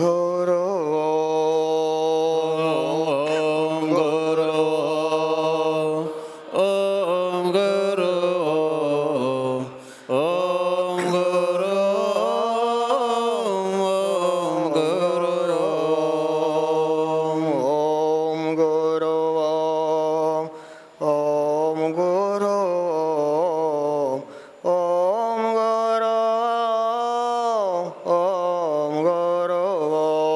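A man chanting solo into a microphone, in long held melodic phrases that glide slowly in pitch, broken by four short pauses for breath.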